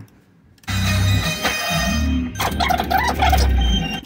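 Music-like playback out of an audio editor, dense and full of high tones over a strong deep bass rumble; it starts under a second in and cuts off just before the end. The rumble is a hidden spoken audio watermark, sped up eightfold but still far too slow to be heard as words.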